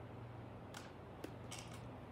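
Faint, short scratchy strokes of a paintbrush on stretched canvas: one about three-quarters of a second in, a small tick a little after a second, then a short cluster around a second and a half, over a steady low room hum.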